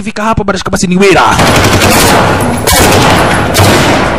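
Sustained automatic gunfire, rapid shots running together, starting about a second in after a brief voice.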